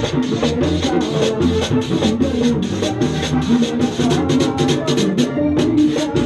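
A live vallenato band playing: a button accordion's melody over the steady scraping rhythm of a guacharaca and hand drums.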